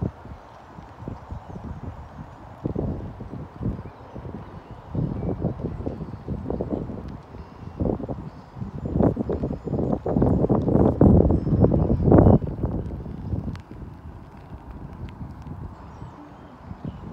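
Hoofbeats of a horse cantering on a sand show-jumping arena: a run of dull thuds that builds to its loudest a little past the middle and eases off near the end.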